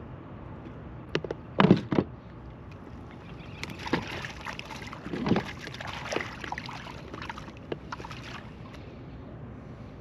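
A few sharp knocks on a plastic kayak, then water splashing and sloshing with scattered clicks as a fish is put into a mesh keeper net hanging over the side in the water. The knocks are the loudest sounds.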